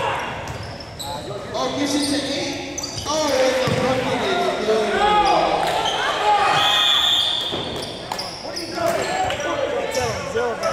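Basketball game in a gym: the ball bouncing on the hardwood floor, sneakers squeaking, and players and spectators calling out, echoing through the hall.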